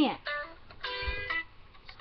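Phone ringtone playing: a short melody of steady notes, heard as two brief phrases.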